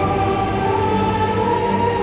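Television drama background score: long sustained notes with wordless choir-like voices over a steady low drone.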